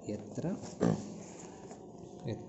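A short vocal sound a little under a second in, loud and brief between pauses in a man's speech.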